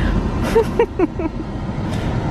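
Low steady rumble of a car, heard from inside the cabin. About half a second to a second in there are a few short, high-pitched voice sounds.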